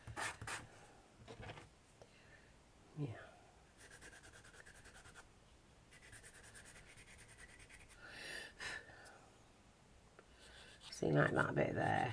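Faint, rapid scratchy strokes of a small file and sandpaper smoothing the edges of a miniature white clay pot, coming in short runs with a louder rub a little after the middle. A voice starts talking in the last second.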